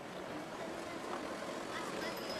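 Street ambience: a steady background rumble and hiss with faint distant voices.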